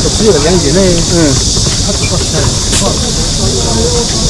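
Busy street-market ambience: a steady, high-pitched insect drone over people's voices talking close by, the voices strongest in the first second or so.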